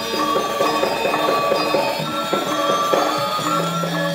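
Balinese gamelan ensemble playing, its bronze metallophones ringing out a fast repeating figure of bright notes. A low note enters about three and a half seconds in and holds under it.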